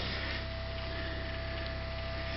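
Steady low electrical hum and buzz with a thin, steady whine above it, from a camper power converter reworked as a battery charge controller while it charges the batteries. There is one light knock at the start.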